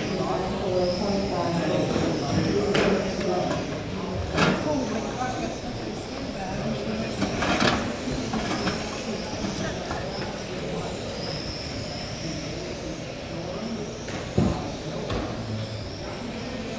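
Electric RC trucks racing, their motors giving a high whine that rises and falls, with a few sharp knocks along the way and voices in the background.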